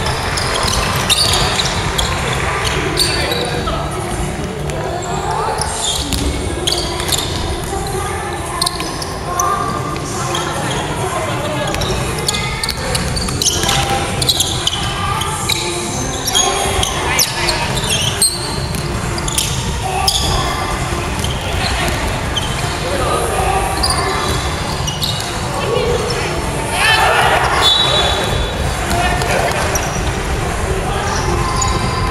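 Basketball being dribbled and bouncing on a wooden gym court during play, with players calling out to each other, all echoing in the large hall.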